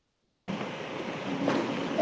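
Dead silence, then about half a second in a steady hiss of open-microphone and room noise cuts in abruptly over the call audio, with a faint voice rising in it near the end.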